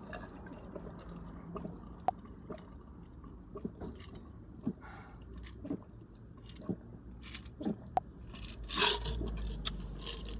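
A person gulping a drink from a glass jar, swallowing about once a second over a low steady hum. A louder breath comes near the end.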